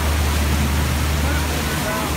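River tour boat's engine running with a steady low drone, mixed with the rush of water churned up in the propeller wash at the stern.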